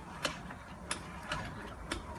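Automatic donut machine running, its dough dropper clicking about once or twice a second over a steady low machine hum.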